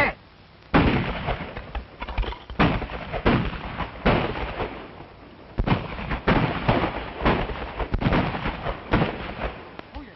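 Gunfire on an old film soundtrack: irregular shots, a dozen or so, starting about a second in, each with a short echo trailing after it.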